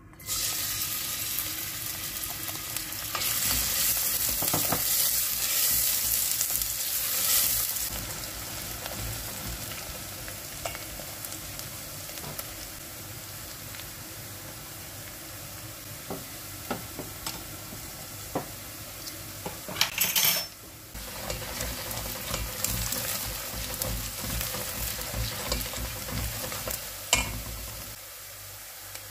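Chopped onion sizzling as it fries in hot oil in a stainless steel pot. The sizzle starts suddenly as the onion goes in and is loudest in the first several seconds. Knocks and scrapes of a spoon stirring against the pot come through it, with a short break about two-thirds of the way in.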